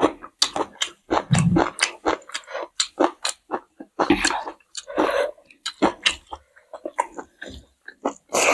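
Close-miked eating sounds: chewing, lip smacks and wet mouth clicks as a mouthful of rice, pork and fried green chilli is eaten by hand, in a quick irregular run of short sharp strokes.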